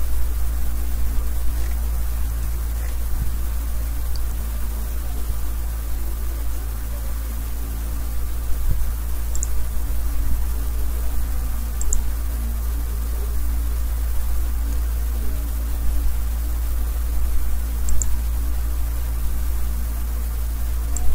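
Steady low electrical hum with a constant hiss of recording noise, and a few brief faint high ticks.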